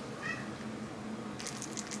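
Domestic cat giving one short meow, then, about a second and a half in, a quick run of light, sharp clicks.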